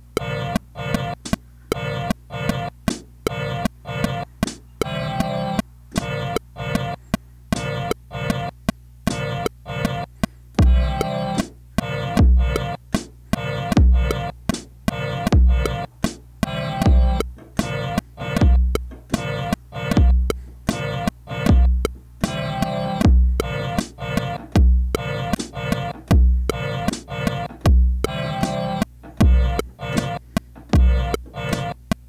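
A programmed beat playing in a loop: a church-bell pad sounding in short repeated chords that fall alternately on and off the beat, with quick hi-hat ticks. A deep kick drum comes in about ten seconds in and hits roughly every one and a half seconds.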